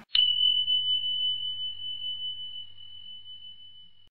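Chime sound effect: one high, pure ding struck just after the start, ringing on as a single steady tone and slowly fading, over a faint low hum.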